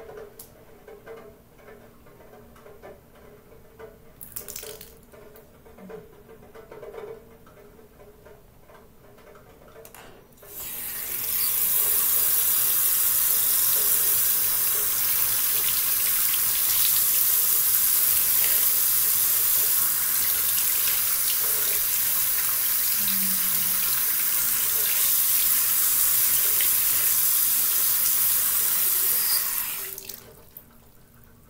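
Bathroom sink tap turned on about ten seconds in and left running steadily into the basin, then shut off just before the end. Before it, only faint small clicks and handling noises.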